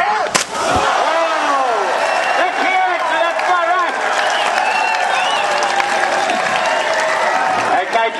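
A single loud slap of a body belly-flopping flat onto pool water about half a second in, followed by a large crowd of students cheering and shouting.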